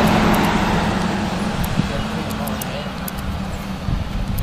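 Road traffic heard as a steady low hum, with faint voices murmuring underneath.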